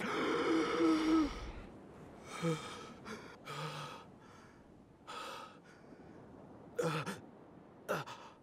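A man gasps loudly with a voiced, drawn-out intake of breath, then keeps gasping for air in short breaths about a second apart, a sharper one near the end.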